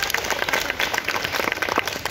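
A group of schoolchildren clapping: a round of applause made of many quick, irregular claps.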